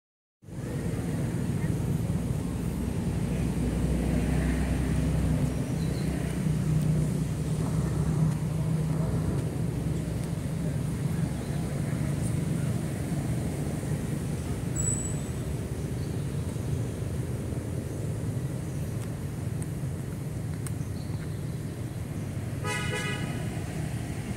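Steady low rumble of a nearby vehicle engine and road traffic, with a short pitched vehicle horn toot about a second before the end.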